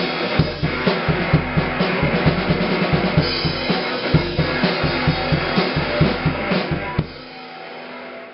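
Mapex drum kit and electric guitar playing rock together, the kick drum driving a fast, steady beat. About seven seconds in the playing stops and a quieter ringing tone is left.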